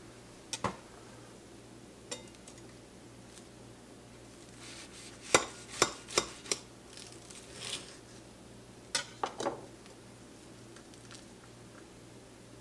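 A knife cutting a toasted-bun fish sandwich in half on a ceramic plate: scattered sharp clicks and short scrapes of the blade against the plate, busiest around the middle, with a few more knocks near the end as the knife is set down.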